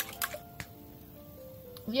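Water-thinned apricot jam sliding from a small steel bowl into cake batter, giving a few short wet drips and clicks in the first half second or so. Faint background music with held notes follows.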